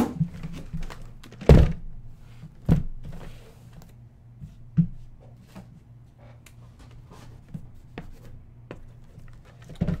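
Shrink-wrapped cardboard hobby boxes being set down and shifted on a desk mat: a few dull thunks, the loudest about a second and a half in, then lighter taps and rustles, over a steady low hum.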